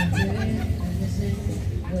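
People's voices with soft chuckling, over a steady low hum.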